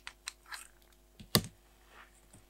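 Light clicks and taps of hands and fingernails handling a small paper planner and craft tools, with a brief soft rustle and one sharp click a little past halfway.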